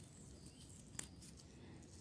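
Near silence with one faint snap about a second in: a young stinging-nettle tip being pinched off by hand.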